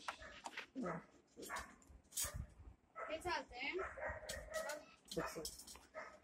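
Faint, low voices and scattered sharp clicks and taps from a hand screwdriver working a tight screw into the TV's mounting hole, the screw too big for its thread.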